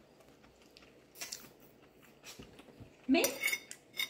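A few light clicks and taps over a quiet room, with a short spoken word near the end.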